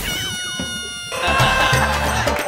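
A cat's meow sound effect, gliding down in pitch, dubbed over a comedy skit. About a second in it gives way to a music cue with a steady low beat.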